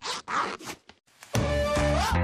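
A few quick rasping strokes of a zipper in the first second, then upbeat background music with a steady bass begins about a second and a half in.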